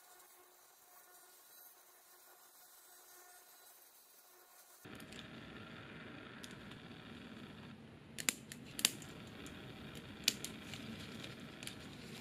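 Small flush cutters snipping support struts off a resin 3D print, each cut a sharp snap; a few snaps come in the second half, after a nearly quiet start.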